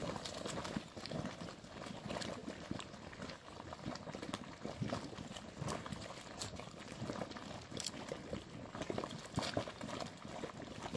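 Geothermal mud pool bubbling: thick hot mud plopping and popping in a steady, irregular stream of short bursts.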